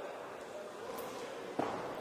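Steady background noise of a boxing hall, with a thump about one and a half seconds in.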